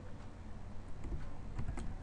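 A few faint computer keyboard key presses over a steady low hum.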